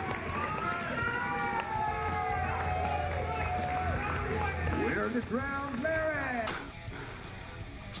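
Several voices shouting and yelling over one another during an arm-wrestling bout, with music underneath; the shouting stops about six and a half seconds in.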